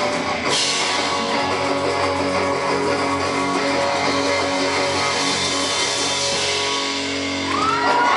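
Live rock band playing an instrumental passage: guitar strummed over bass guitar, with a bright crash about half a second in. Near the end, the audience starts whooping and cheering.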